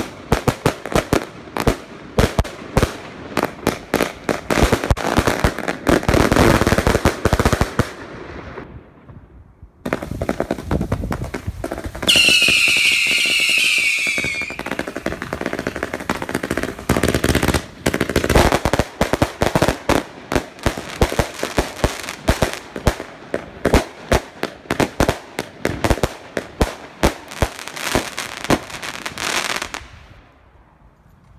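Consumer fireworks cakes firing rapid volleys of sharp shots and crackling bangs, with a brief lull about eight seconds in. Around twelve seconds in, a burst of shrill siren whistles sounds for about two seconds, each dropping slightly in pitch, and then the rapid shots resume until the end.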